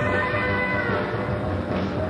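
Live instrumental band of electric guitar, bass, drums and keyboards playing, recorded from the audience on cassette. Held lead notes slide up and down in pitch over the band.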